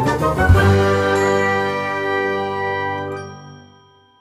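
A bell-like chime sound effect: a ringing chord, struck again about half a second in, that dies away over about three seconds.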